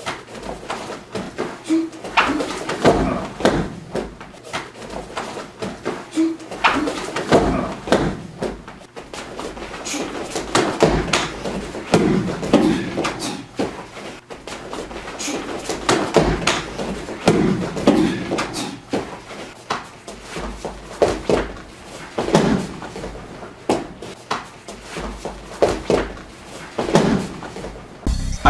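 Live sound of a partner self-defence drill on foam mats: repeated thuds and slaps of strikes, grabs and a body being taken down onto the mat, with brief vocal sounds in between.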